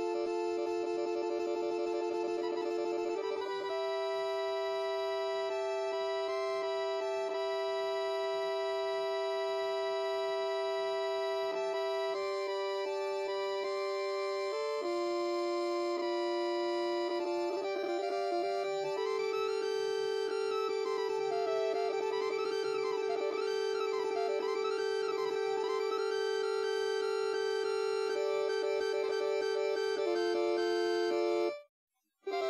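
Improvised synthesizer music played only on the white keys, so everything stays in C: slow, sustained organ-like notes that change every few seconds. In the second half a wavering, looping figure slides up and down above them.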